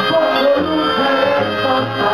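Live band music from a concert: sustained melody notes over a pulsing bass line.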